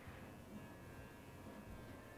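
Faint steady hum over low room noise, with no distinct sound standing out.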